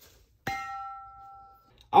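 A single metallic strike on a large argon gas cylinder, which rings with two clear tones that fade away over about a second.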